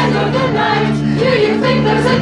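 A group of amateur singers singing in unison over strummed ukuleles and a bass guitar, the bass moving between held notes about every half second.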